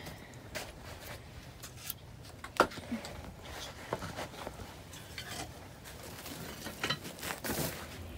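Scattered knocks and clatters of split firewood being handled at a woodpile, with one sharp knock about two and a half seconds in.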